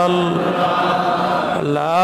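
A man's voice chanting in the slow, melodic style of a Bengali waz sermon. A held note fades away, and the chant rises again shortly before the end.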